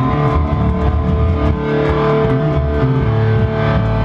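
Live hardcore band's distorted electric guitar and bass playing loud, held chords.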